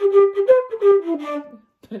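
Irish flute playing a quick run of short, separately tongued notes using a hard 'K' articulation, the pitch stepping down toward the end.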